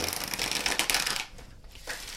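A deck of tarot cards being riffle-shuffled by hand: a rapid flutter of card edges clicking together for about a second, then softer as the cards are bridged and squared.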